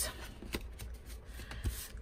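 Hands picking up and moving a stack of small cardstock ephemera pieces across a tabletop: soft paper handling noise with a few light taps.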